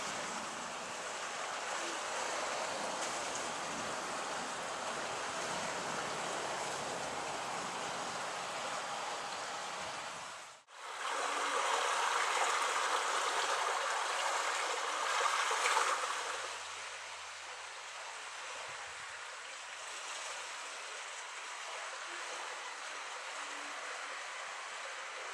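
Steady rushing noise of Airbus A320-family airliners' jet engines mixed with wind noise. The sound cuts off abruptly about ten seconds in, comes back louder for around five seconds, then settles to a quieter rush.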